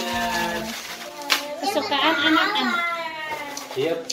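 Children's voices talking in a small room, with one sharp tap a little over a second in.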